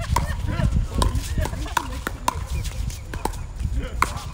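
Pickleball paddles striking a plastic pickleball in a quick exchange at the net: a run of sharp pops, about two a second.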